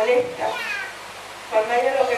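A woman's raised, high-pitched voice through a microphone and PA system, breaking off for about a second in the middle and then starting again.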